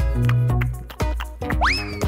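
Playful background music with a steady beat, with a quick rising whistle-like sound effect about one and a half seconds in.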